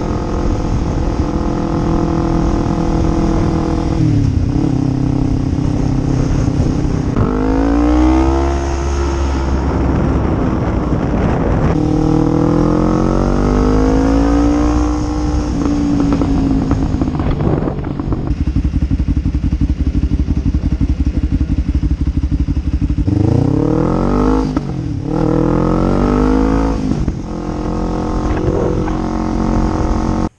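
Kawasaki sport motorcycle's engine running on the road, climbing in pitch as it accelerates and dropping as it eases off, with a run of quick upshifts near the end.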